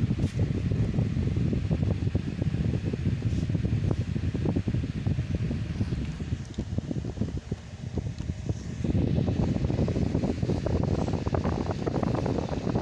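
Low rumble of moving air buffeting the microphone, like the draught from a room fan, easing briefly about seven seconds in and then coming back.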